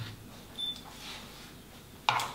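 Quiet room tone with one short, high electronic beep about half a second in.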